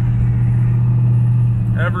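Twin-turbo LSX V8 of a Buick Skylark race car cruising at steady speed, a low, even drone heard from inside the cabin.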